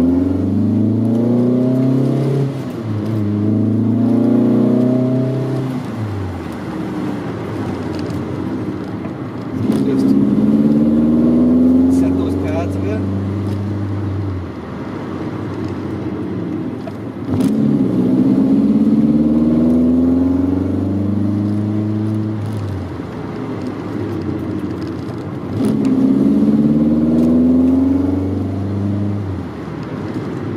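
1983 Volkswagen Rabbit GTI engine heard from inside the cabin while driving. It pulls up in pitch four times as the car accelerates, with quieter, lower stretches between the pulls.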